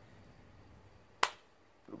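A single sharp click a little over a second in, dying away quickly, against a quiet background.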